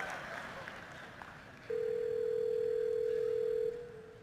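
A single telephone ringback tone: one steady tone lasting about two seconds, starting about a second and a half in. It is an outgoing phone call ringing at the far end, not yet answered.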